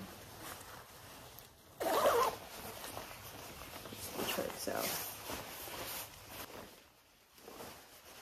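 Zipper on a lightweight jacket being worked, with the rustle of its shiny fabric as the jacket is pulled and settled on the body. A louder burst comes about two seconds in.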